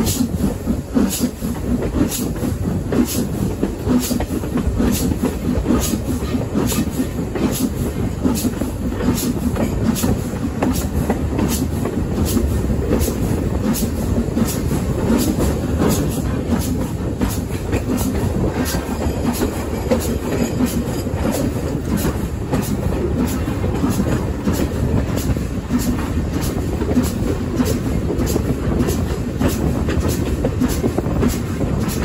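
Heritage steam-hauled passenger train running steadily, heard from an open carriage window: a continuous low rumble of the train in motion with a regular run of sharp clicks as the wheels cross the rail joints.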